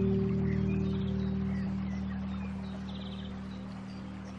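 Slow meditation music tuned to 432 Hz: a sustained low chord, struck just before, fading slowly, with bird chirps scattered over it and a short rapid trill about three seconds in.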